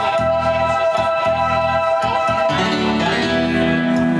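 Live electronic keyboard playing held organ-sound chords over a pulsing bass line, with no singing. About two and a half seconds in, the harmony moves to lower held notes.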